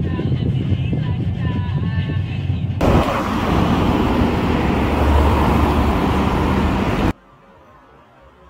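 Low, steady road rumble inside a moving car. About three seconds in it changes abruptly to louder rushing road-traffic noise with a deep rumble, which cuts off suddenly about seven seconds in, leaving only a faint hiss.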